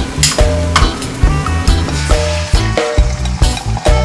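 Shrimp sizzling in oil on a grill pan, under background music with a steady beat.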